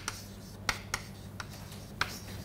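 Chalk writing on a chalkboard: short scratching strokes with a few sharp taps as the chalk strikes the board, over a low steady hum.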